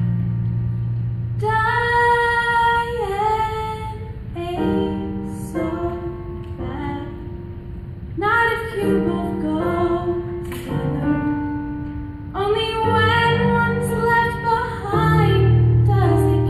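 A woman singing a slow musical-theatre ballad over instrumental accompaniment, in long held phrases with short breaks between them.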